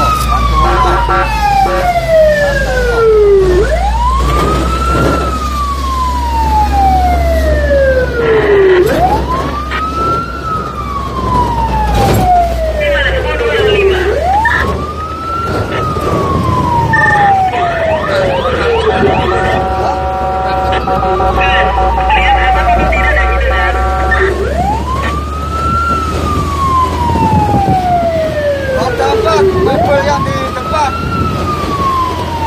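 Fire engine siren wailing, heard from inside the cab: a quick rise and a long slow fall, repeating about every five seconds, over the low rumble of the truck's engine. Partway through, the wail breaks off for about five seconds of steady blaring tones before it resumes.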